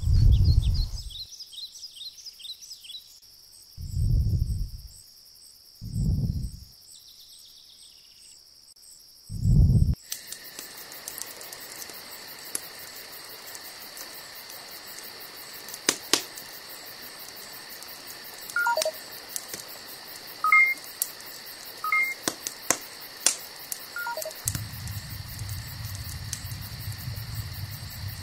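Edited sound-design track. It opens with four deep low thuds a couple of seconds apart, then turns into a steady high insect-like hum with scattered clicks and a few short electronic beeps. A low rumbling noise comes in near the end.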